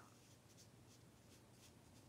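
Very faint swishes of a round watercolour brush stroking wet paint onto cold-press watercolour paper, about half a dozen short strokes, over a low steady room hum.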